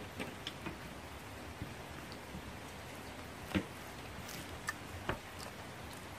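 Quiet steady background hiss with a few scattered faint clicks and ticks, the clearest about three and a half seconds in.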